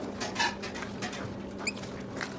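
Gloved hands squishing and kneading a soft cream mixture with cocoa powder in a stainless steel bowl: irregular wet squelches and pats, with a short high squeak a little after halfway, over a steady low hum.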